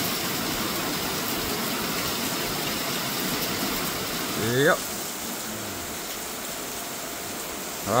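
Heavy downpour of rain, a steady, even hiss.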